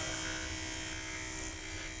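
Truth Hardware Sentry II motorized window/skylight operator's electric gear motor running steadily with a buzzing hum, driving the sash open on command in normal operation after a reset. A higher hiss in the sound eases off about one and a half seconds in.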